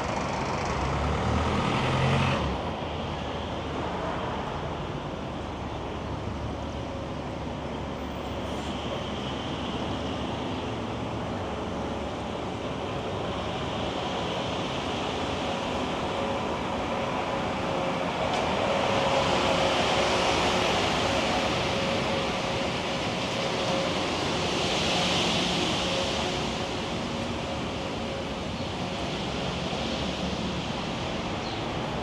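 Downtown street traffic: cars and trucks running and passing, a low engine rumble early on, and two louder pass-bys, one about two-thirds of the way through and another a few seconds later.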